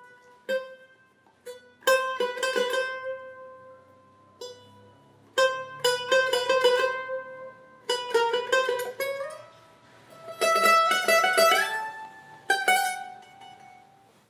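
Brazilian bandolim (mandolin) played solo: about six short phrases of plucked notes and chords with brief pauses between them, the notes ringing out, with a run of fast repeated picking early on. It is a demonstration of the instrument's own distinctive tone.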